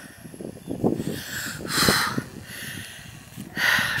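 A person breathing close to the microphone, two soft audible breaths about two seconds apart, over a low rustle of wind and handling on the mic.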